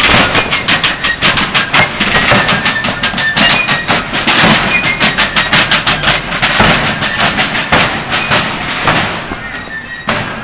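Civil War–style fife and drum corps playing a march: rapid strokes on rope-tension field drums under shrill fife notes. The music grows fainter near the end.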